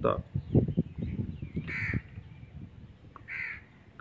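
Two short bird calls, about a second and a half apart, after a few soft low thumps in the first second.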